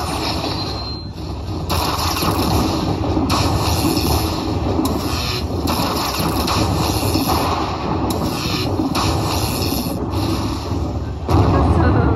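Slot machine bonus-tally sound effects: deep rumbling, crackling thunder-like sounds in a run of strikes about a second or so apart, as the free-spin win total counts up. Near the end it jumps louder into a jingling win tune.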